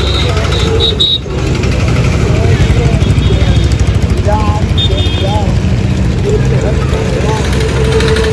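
Roadside traffic noise: a steady low rumble of idling and passing engines from motorcycles and auto-rickshaws, with scattered voices of people nearby.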